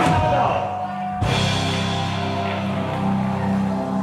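Live band music: a held note, then about a second in the sound cuts abruptly to the band playing steady sustained chords.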